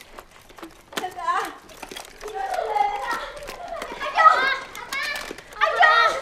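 Children's voices calling out excitedly, mixed with spoken dialogue in Hakka; a child calls "阿爸" ("Dad") near the end.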